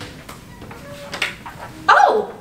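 A restroom door opening in a quiet hallway: faint room noise, then a short, sudden pitched sound near the end as the door swings open.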